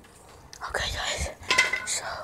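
A man whispering breathily close to the microphone, loudest near the end.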